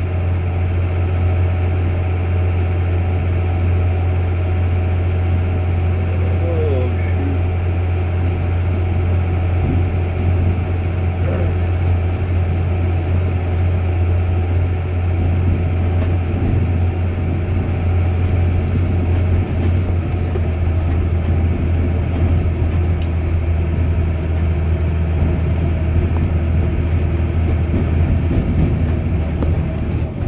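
Farm tractor engine running steadily at a constant speed with a deep, even hum, heard from the driver's seat as the tractor drives across the field.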